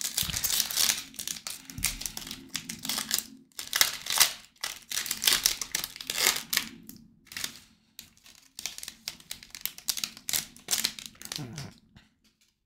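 A baseball card pack's shiny foil wrapper being torn open and crinkled in the hands, in irregular rustling bursts with short pauses.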